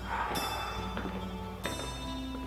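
Soft background music score with sustained bell-like notes, a new note struck about a third of a second in and another near the end.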